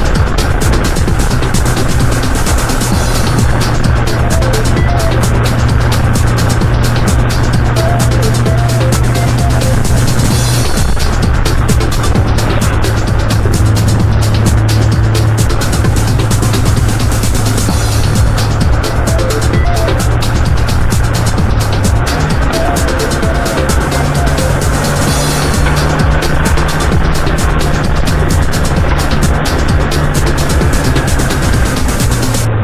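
Background music laid over the steady running of a Subaru R2 kei car driving along a paved road, with its engine and road noise continuous.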